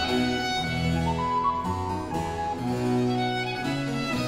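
A baroque chamber ensemble plays a 17th-century canzona: a bowed viola da gamba bass line and harpsichord continuo support a high melody line, with notes moving at a steady pace.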